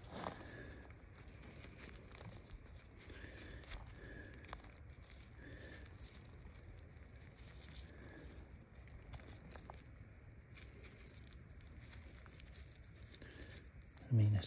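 Faint rustling and scraping of work gloves handling clay-caked rock close to the microphone.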